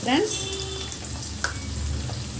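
Chopped onions and fresh curry leaves sizzling in hot oil in an aluminium kadai as they are dropped in and stirred with a wooden spatula, with a single sharp tick about one and a half seconds in.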